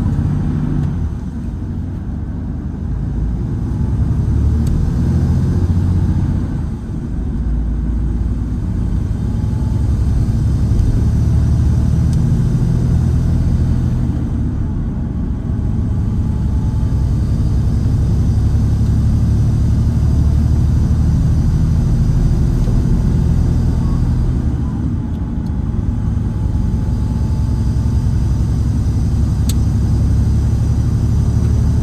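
Volvo B11RT coach's 11-litre straight-six diesel engine and road noise heard from inside the passenger saloon at speed: a steady low drone whose engine note dips and picks up again a few times, about seven seconds in and again near the end.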